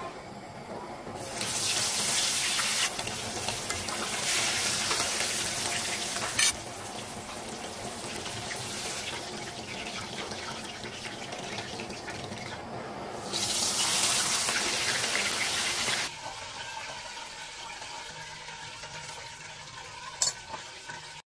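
A whole spice-coated fish frying in hot oil in a pan, sizzling steadily, the sizzle louder in spells near the start and again about two-thirds of the way through, then quieter for the last few seconds. A sharp click about six seconds in.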